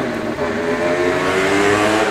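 A motor vehicle accelerating past, its engine pitch rising gently and the sound growing louder toward the end.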